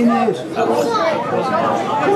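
Several voices shouting and calling out at once, the words indistinct.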